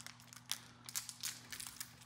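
Faint, scattered crinkles of a jelly candy's plastic wrapper being worked open by hand.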